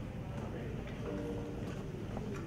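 Quiet theatre stage with scattered light clicks and knocks, and faint held musical notes coming in about a second in.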